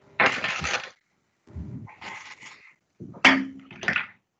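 Several short bursts of clatter and rustle, like objects being handled, with silent gaps between them; the sharpest comes about three seconds in.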